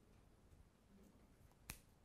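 Near silence: room tone, with one sharp click about three-quarters of the way through.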